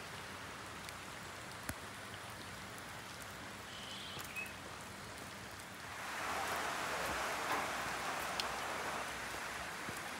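Heavy rain pouring steadily, with a few sharp drip clicks. About six seconds in it grows louder for some three seconds, then eases back.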